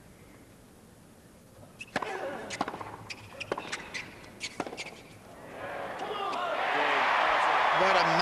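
Tennis rally: a quick series of sharp racket-on-ball strikes and bounces between about two and five seconds in. Then crowd applause and cheering swells up and ends loud.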